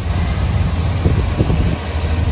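Steady low drone of a vehicle's engine and tyres running on a wet road, heard from inside the moving cab.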